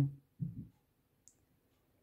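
A pause in speech: a spoken word fades out, a faint low sound follows about half a second in, then near silence with a single faint tick a little over a second in.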